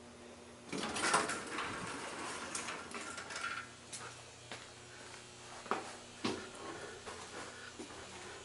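Footsteps and handling rustle as someone steps into a small elevator car, followed by a few sharp separate clicks and knocks. A low steady hum sits underneath before the steps begin.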